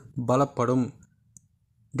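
Speech: a narrator speaking in Tamil for about the first second, then a short pause with a single faint click.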